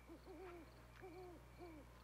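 Faint owl hooting: about six soft hoots in three short groups, three, then two, then one.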